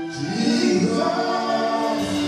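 Gospel worship singing: voices sing held, sliding notes in a choir-like blend, led by a man singing into a microphone.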